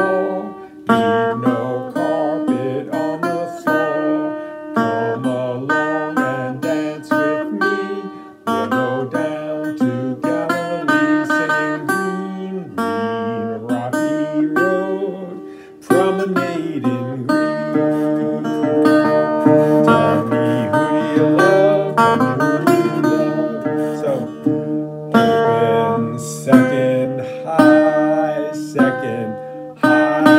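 Steel-bodied resonator guitar in open D tuning, picked steadily through a folk tune, with a man's voice singing along.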